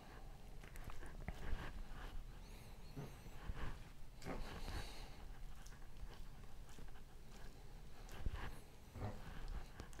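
Faint, soft squishing and small clicks of raw chicken trimmings being squeezed by hand and pushed onto a wooden skewer.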